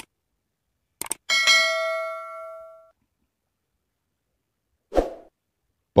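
Subscribe-button animation sound effects: a quick double mouse click, then a notification bell ding that rings out and fades over about a second and a half. A short soft thump follows near the end.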